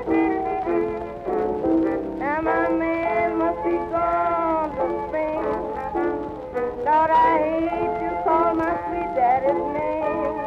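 A late-1920s jazz band record playing an instrumental passage, horn lines sliding between notes a couple of times. It has the dull, narrow sound of an old recording, with little treble.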